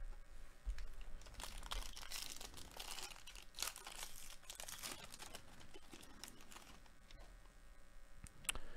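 A trading-card pack's plastic-foil wrapper being torn open and crinkled by hand, a crackly rustle that is busiest in the middle and fades near the end.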